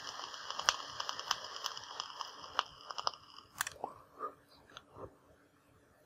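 Electronic cigarette fired and drawn on, a clearomizer tank on a 2.2-ohm coil at 12 watts: a steady airy hiss with a high whistle and fine crackling of e-liquid on the coil. It lasts about three and a half seconds and ends with a sharp click, followed by a few faint soft sounds.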